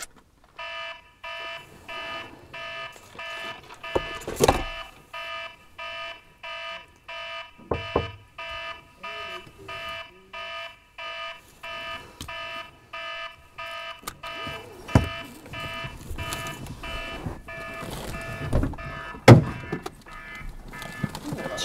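A car's electronic warning chime dinging steadily over and over, with several thumps and knocks as someone shifts about inside the cabin, the loudest one near the end.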